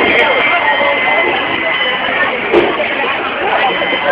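Crowd chatter at a carnival: many voices talking at once. A thin, steady high tone runs through the first half or so.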